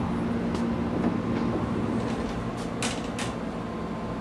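Steady low hum inside a 113-series electric train car, with a faint steady tone. About three seconds in come two short clicks.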